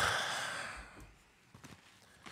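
A man's sigh: a long breath out close to the microphone, fading away over about a second. It is followed by a few faint clicks as headphones are handled.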